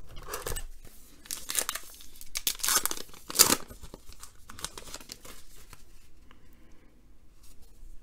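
A baseball card pack's wrapper being torn open by hand: a run of ripping tears, the loudest about three and a half seconds in, then quieter crinkling and rustling of the wrapper.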